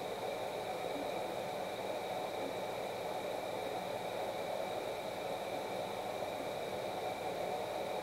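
Steady background hiss with two faint, steady high-pitched tones running through it: room and microphone noise, with no distinct event.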